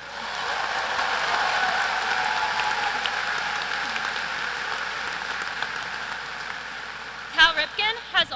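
Large audience applauding, swelling within the first second and slowly tapering off. A woman starts speaking near the end.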